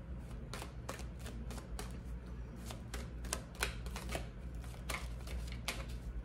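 A deck of tarot cards shuffled by hand, the cards slipping against each other in a string of sharp, irregular clicks, about two a second.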